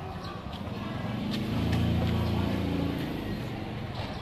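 A motor vehicle's engine passing close by, growing louder for a couple of seconds and then fading away.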